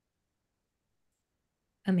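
Near silence, a gap between speakers, until a woman starts speaking near the end.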